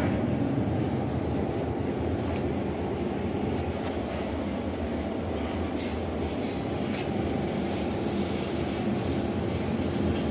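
Steady low rumble of restaurant room noise, with a few faint clinks.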